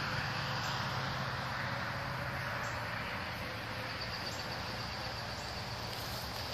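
Steady outdoor background: an even hiss with a faint steady hum, and no distinct events.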